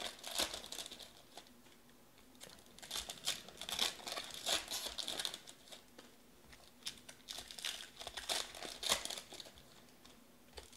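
Trading-card pack wrappers crinkling and tearing as packs are opened and the cards handled, in three spells of crackling with short pauses between.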